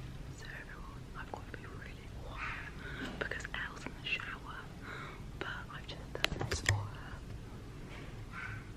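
A woman whispering close to the microphone, with a few sharp clicks about six seconds in.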